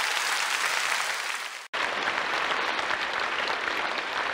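Audience applauding, an even patter of many hands clapping. A little under two seconds in it cuts out abruptly for an instant and resumes.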